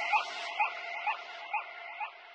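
The fading tail of an outro jingle: an echo repeating about twice a second and dying away.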